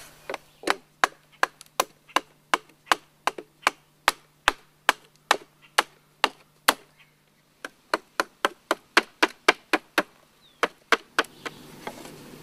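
Repeated chopping strokes of a blade into a weathered wooden board, shaping it into a paddle. The sharp wooden strikes come about two or three a second, with a short break past the middle.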